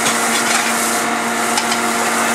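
Noodles with garlic, ginger and shallot sizzling in a smoking-hot wok pan, with light scrapes of tongs, over a constant mechanical hum.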